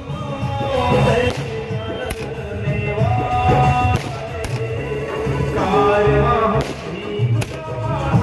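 Music with singing plays throughout, crossed by about four sharp bangs of aerial fireworks bursting a second or two apart.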